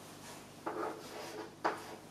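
Chalk writing on a blackboard: short scratchy strokes, with two sharper taps of the chalk about a second apart.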